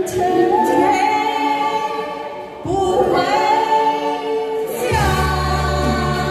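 Two women singing a slow pop song through handheld microphones over a backing track, holding long sustained notes across two phrases. A deep bass chord enters about five seconds in.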